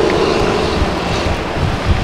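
Steady outdoor rush of wind buffeting the microphone, mixed with road traffic noise, with one brief thump near the end.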